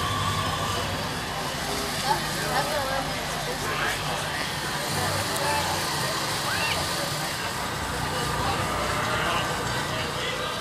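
Indistinct voices of people talking nearby over the low, steady running of a vehicle engine.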